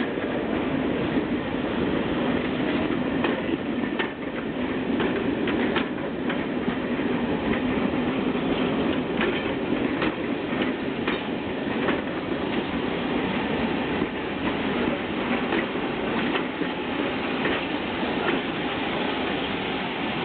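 Railway passenger coaches rolling slowly past on the track: a steady rumble of wheels on rail, with scattered sharp clicks as the wheels pass over rail joints.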